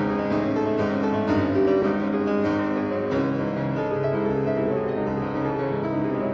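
Piano music: a slow piece of overlapping held notes and chords, played at a steady level.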